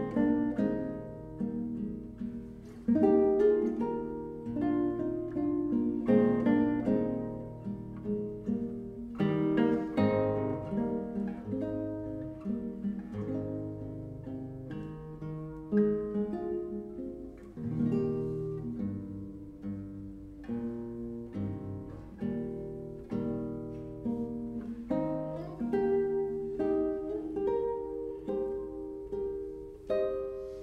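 Solo classical guitar playing a melodic piece: plucked melody notes over held bass notes, getting quieter near the end.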